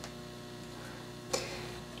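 Hands handling a length of floral wire: two small ticks about a second and a half apart, the second the sharper, over a faint steady hum.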